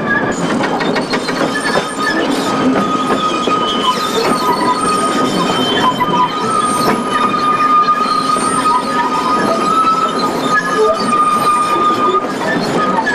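Narrow-gauge (1 ft 11½ in) passenger coaches running round a curve, their wheel flanges giving a steady high squeal through most of it over the rumble and light clatter of the wheels on the track.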